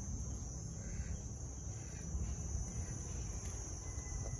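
Insects trilling in one steady, high-pitched drone, with a faint low rumble underneath.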